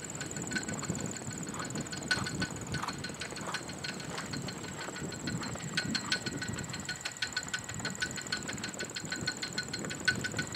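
Outdoor ambience: a steady high-pitched buzz with a regular chirping tick, about four a second, that grows plain from about six seconds in, over a low, even rumble.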